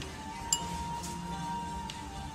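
One sharp clink of cutlery against tableware about half a second in, ringing briefly, over steady background music.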